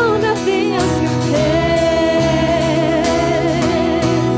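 Live worship song: women singing in harmony over keyboard and acoustic guitar. Through the middle a lead voice holds one long note with vibrato.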